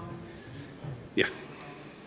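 A lull with quiet room tone and a faint voice, broken a little over a second in by one short, abrupt vocal sound.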